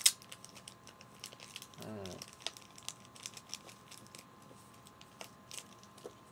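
Small clear plastic bag crinkling, with light clicks of tiny plastic toy parts being handled. The bag holds spare action-figure hands.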